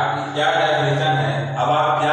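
A man's voice speaking, explaining in a steady, fairly even pitch.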